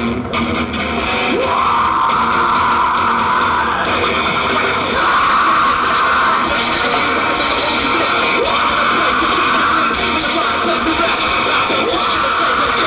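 A live heavy rock band plays a distorted electric-guitar riff in repeated chord blasts of about two seconds each, with drums and a voice shouting into a microphone. It is heard from within the crowd through a camcorder microphone.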